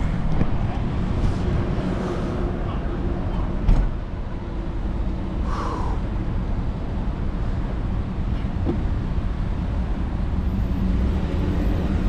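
Road traffic in a slow-moving queue: vehicle engines idling and running, a steady low rumble, with one sharp knock about four seconds in.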